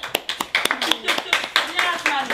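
Hand clapping: a short round of quick, irregular claps, with voices talking over it.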